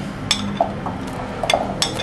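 Black Gaeta olives tipped from a plate into a frying pan: a few short, light clinks as the plate and the olives knock against the pan, over a low steady hum.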